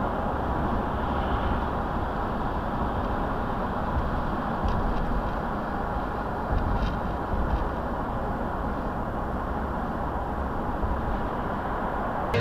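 Steady road and engine noise inside a car cruising at highway speed, picked up by a dashcam microphone, with a couple of faint ticks around the middle.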